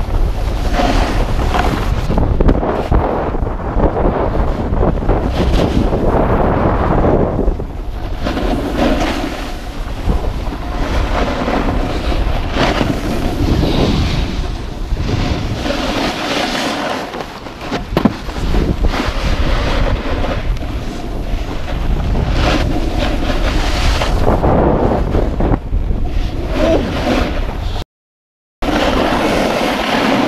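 Wind buffeting the microphone of a camera moving fast downhill, mixed with the hiss and scrape of edges sliding on hard-packed groomed snow. The sound cuts out completely for about half a second near the end.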